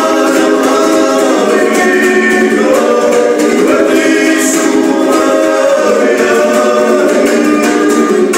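Two male voices singing a Gurian folk song in close harmony, accompanied by a small Georgian plucked lute strummed steadily. Near the end the singing stops and the strummed lute carries on alone.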